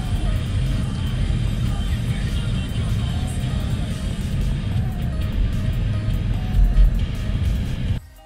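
Steady low rumble of road and engine noise inside a moving car, with music playing over it.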